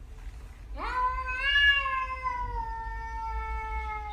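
A tabby cat giving one long, drawn-out meow that starts about a second in, rises briefly, then slowly falls in pitch over about three seconds.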